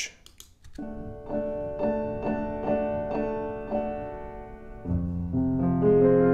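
Steinway grand piano playing a passage, recorded in ORTF stereo with no processing through Herald SWM-100 small cardioid condenser mics. Notes begin about a second in, repeated evenly about twice a second, and the playing turns louder and fuller, with low notes added, near the end.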